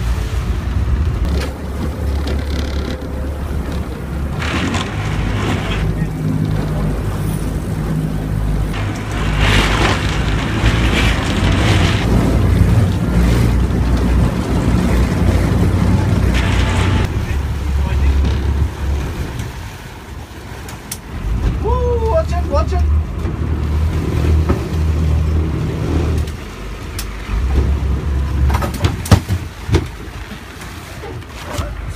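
Boat engine running with a steady low rumble that drops away and returns, with gusts of wind on the microphone. Near the end come sharp splashes from a hooked marlin thrashing at the surface beside the boat.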